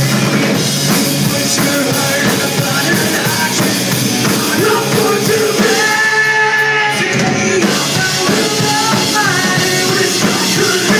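Live rock band playing, with electric guitars, keyboard and drum kit under a male lead vocal. The singer holds one long note a little past halfway through. The deepest bass is thin.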